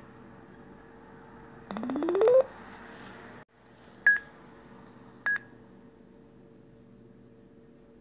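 SCP-860 Bluetooth speaker microphone powering on: a short rising chime about two seconds in, then two short high beeps about a second apart.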